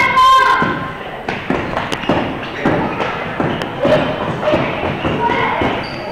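Gym sounds during a basketball game: a basketball bouncing and thudding on the gym floor and players' footfalls, under spectators' voices throughout. A short shrill burst comes right at the start.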